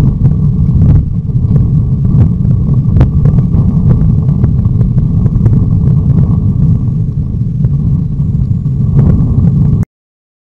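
Loud, steady low rumble with scattered small clicks picked up by a trail camera's built-in microphone. It cuts off suddenly near the end when the camera's recording stops.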